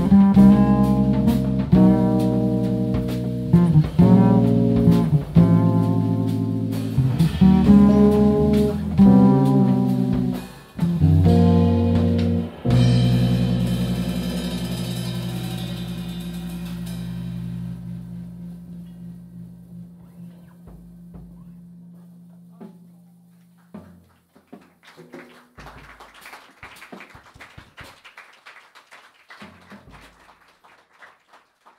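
Slow jazz ballad on electric bass and double bass with two drum kits: ringing bass notes and chords over soft drum and cymbal strokes. About twelve seconds in, a chord is left ringing and dies away over roughly ten seconds, leaving only faint scattered taps.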